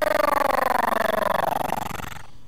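Doomsday's monstrous roar in the animation: one long bellow that slowly falls in pitch and fades away near the end.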